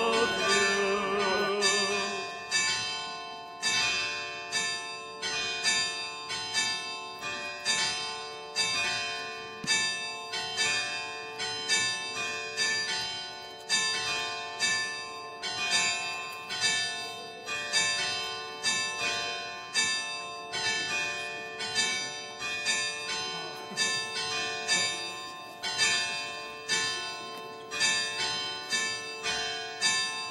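Church bells ringing in a steady run of strokes, about one and a half a second, each stroke ringing on into the next. A sung hymn fades out in the first two seconds.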